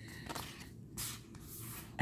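Oracle cards sliding and rubbing against one another as a hand rearranges a fanned deck: a few short, faint papery swishes, the loudest about a second in.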